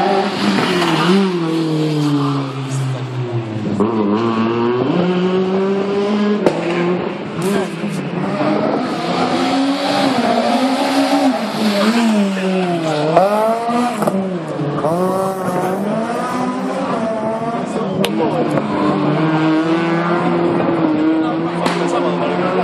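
Fiat Seicento race car's small four-cylinder engine revving hard and constantly rising and falling in pitch, as it is driven through a tight course with repeated acceleration and braking.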